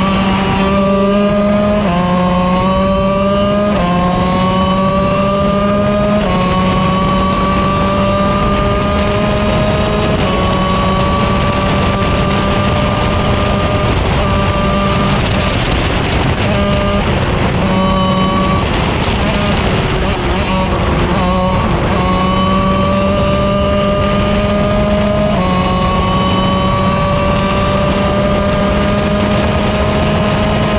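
A 125cc KZ shifter kart's single-cylinder two-stroke engine at full throttle, heard onboard. The pitch climbs and drops sharply with each upshift, three times about two seconds apart early on. Then comes a long pull, a stretch in the middle where the note breaks up and falls, and another climb with a shift near the end.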